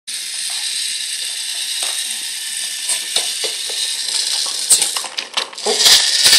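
Battery-powered Brio toy locomotive running on wooden track: a steady high whir from its small motor and gears, with scattered clicks and knocks from the wheels and cars on the track. A burst of louder clattering comes near the end.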